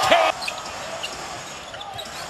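Live NBA game sound in an arena: crowd noise with a basketball bouncing on the court. It is louder for a moment at the start, then drops abruptly to a quieter, steady background.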